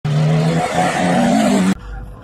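Car engine revving with tyres squealing, the engine note climbing in pitch, then cutting off suddenly near the end.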